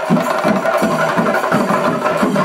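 Chenda melam: a group of chenda drums played in a fast, dense rolling rhythm, with a steady high held note sounding above the drumming.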